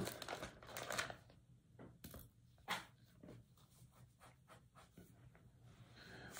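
Thin Bible pages rustling and flicking as they are turned to find a passage: a scatter of short paper sounds over the first three seconds, the last one about three seconds in.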